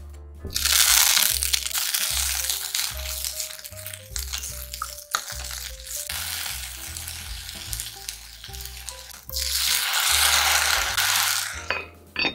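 Broccoli florets sizzling in hot olive oil in a cast-iron pot, stirred with a wooden spatula, with a loud hiss starting about half a second in and a second loud burst of sizzling near the end. Background music plays underneath.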